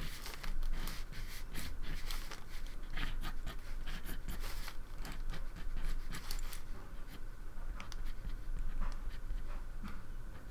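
Mechanical pencil scratching across paper in quick, irregular sketching strokes, dense at first and thinning out over the last few seconds.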